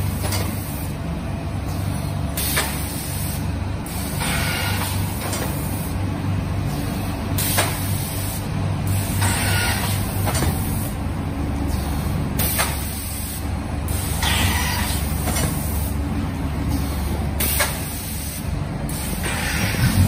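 Vertical powder packing machine running: a steady motor hum with a short hiss of compressed air about every two and a half seconds as it cycles through its bags.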